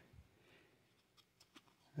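Near silence, broken by a few faint, brief clicks in the second half as basketball cards are shuffled from the front of the stack to the back in the hands.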